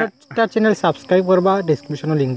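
A man talking, with a steady, high-pitched insect drone behind him that comes in about half a second in.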